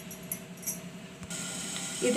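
Faint crackly clicks of dried red chillies being handled and set down on a glass plate, a few light ticks in the first second over a low steady hum.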